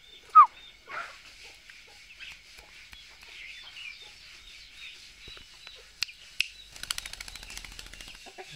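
A short bird squawk gliding down in pitch about half a second in, over faint background chirping. Near the end comes a quick flurry of wingbeats as a young red-breasted parakeet takes off.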